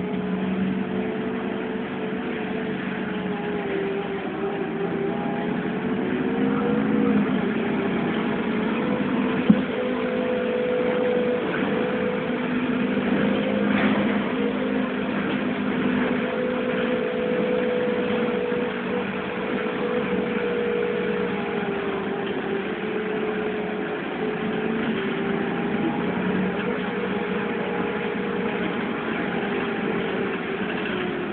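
Irisbus Citelis city bus with an Iveco Cursor 8 CNG engine, heard from inside the cabin while driving; a steady engine note rises and falls gently with speed. A single sharp click about nine and a half seconds in.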